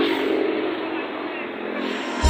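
Faint voices of people arguing, over a steady rushing noise.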